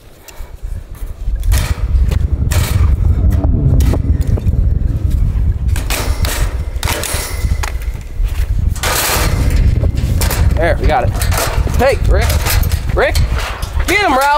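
A loud, unsteady low rumble with scattered rustling and scraping noises, and a few short voice-like calls near the end.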